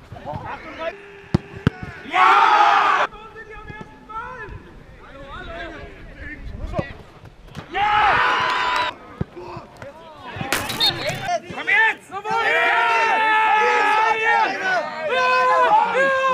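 Men's voices shouting and cheering on an open football pitch in several loud bursts, the longest near the end, with a few sharp knocks about a second and a half in.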